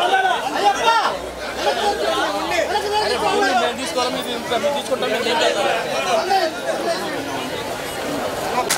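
Crowd chatter: many people talking and calling out at once, their voices overlapping with no break.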